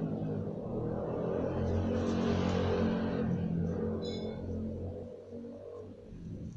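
A motor vehicle passing by, its low rumble swelling to a peak two to three seconds in and then fading away.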